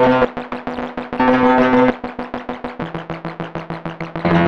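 Nebula Clouds Synthesizer (a Reaktor ensemble) sounding a sustained pitched tone chopped into a fast even stutter of about eight pulses a second. Its pitch steps down near three seconds in. The resonator module is switched to bypass partway through.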